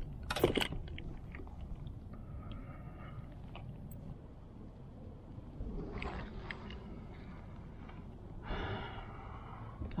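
Handling noises in a kayak as a freshly caught largemouth bass is unhooked: a sharp knock about half a second in, then scattered rustles and light knocks over a steady low rumble.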